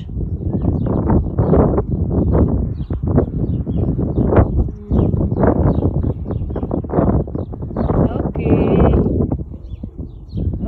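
Muffled, indistinct talking with no clear words, loud and continuous, with a brief higher-pitched voiced sound near the end.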